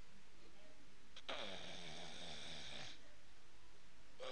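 A man's long, strained, wheezy groan that falls in pitch, starting about a second in and lasting nearly two seconds: an imitation of someone straining to get up.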